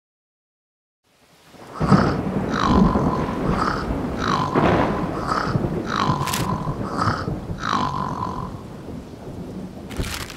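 Cartoon stormy-night sound effects: rumbling thunder and rain noise start after a second or so of silence. Over them, the sleeping larva snores over and over, about once a second, each snore ending in a short whistle-like tone.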